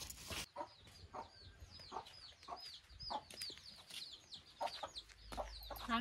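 Chickens calling: a run of short, high, falling peeps, about two or three a second, with a few lower clucks among them.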